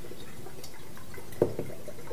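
Coconut water draining from a pierced eye of a mature coconut and dripping into a drinking glass, with one light tap about one and a half seconds in.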